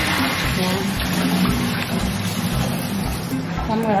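Background music with a steady beat, over water swishing as a hand stirs glutinous rice soaking in a plastic basin.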